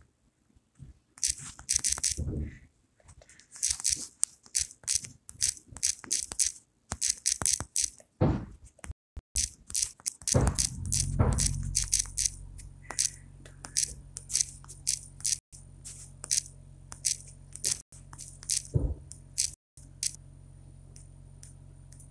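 Fingertips and nails tapping on a smartphone's touchscreen while typing, a quick irregular run of light clicks, a few a second, with a couple of duller handling knocks. A low steady hum sets in about halfway through.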